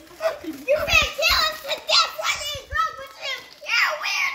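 Excited talking, a child's voice among adults, with a few short dull bumps underneath.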